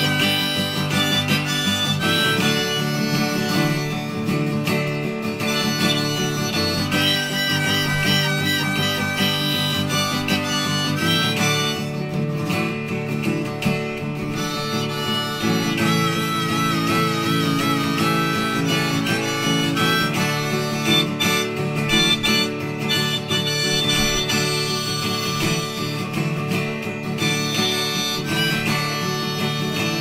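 Instrumental break of a folk song: harmonica playing a melody over acoustic guitars, with a wavering held note about halfway through.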